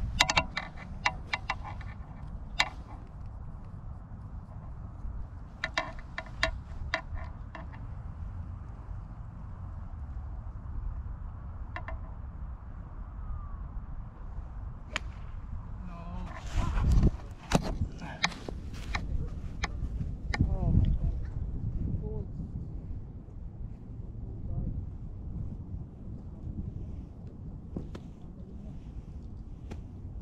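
Golf push cart rolling over fairway grass, with clubs clicking and clinking in the bag in short runs, over a steady low wind rumble on the microphone.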